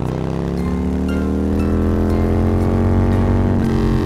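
Motor scooter engine accelerating, its pitch rising steadily for about three and a half seconds and easing off near the end.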